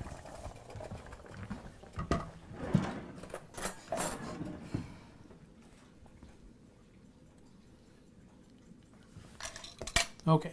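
Metal utensil and pot clinking as a pot of boiled yucca is checked: a handful of sharp clinks and knocks in the first half, then quiet.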